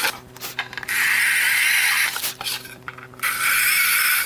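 Cordless drill running a carbide-tipped Snappy countersink bit into melamine board: a steady motor whir with the bit cutting in a hissing rasp, in two main runs of about a second each and short bursts between.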